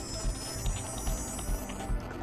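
Opening theme music of a TV news programme, with a steady pulsing beat a little over two beats a second under sustained high tones.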